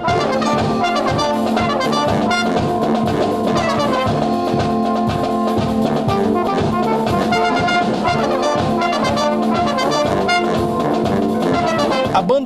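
A school wind band playing live: trumpets, saxophone, euphoniums and tubas hold chords over a steady drum beat.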